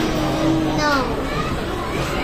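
Indistinct voices, one of them a high voice drawn out on one pitch for about a second near the start.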